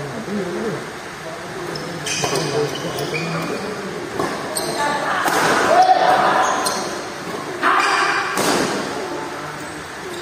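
Badminton rackets striking a shuttlecock in a fast doubles rally: a run of sharp hits from about two seconds in, ringing in a large hall, with voices in the background.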